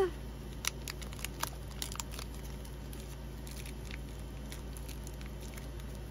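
Clear plastic packaging crinkling as a pair of scissors is unwrapped by hand: a handful of short, sharp crinkles in the first two seconds, then only faint handling.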